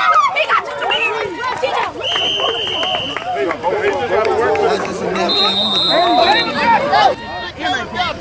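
Youth football spectators shouting and talking over one another, with two brief high whistle tones, the first about two seconds in and a higher one a little past five seconds.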